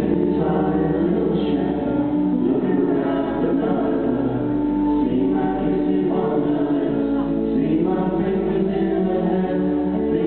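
Live folk band: several voices singing together in close harmony on held notes over acoustic guitar accompaniment.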